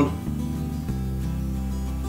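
Background music: a guitar piece with steady held notes over a bass line.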